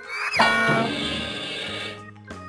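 An edited-in sound effect over children's background music: a short whistle-like glide that rises and falls about a third of a second in, then a bright whooshing wash that cuts off suddenly near the end.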